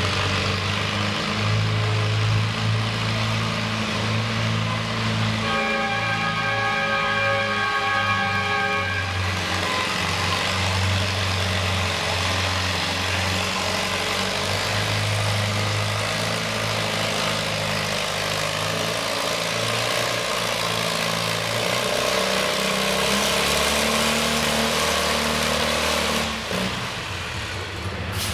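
Minneapolis-Moline pulling tractor's engine under full load, dragging the sled down the track as a steady, heavy drone that drops away near the end as the pull finishes. A steady high whine sounds for about three seconds, starting some five seconds in.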